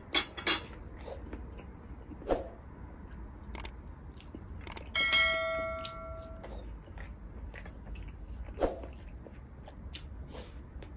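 Close-up eating sounds of a man chewing beef and rice eaten by hand, with a few sharp wet clicks and smacks, two of them loud near the start. About five seconds in comes a bright ringing chime with several pitches that fades out over about a second and a half: the bell sound effect of a subscribe-button overlay.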